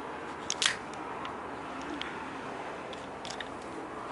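Light handling noise: a few soft clicks and rustles over a steady background hiss, the loudest about half a second in.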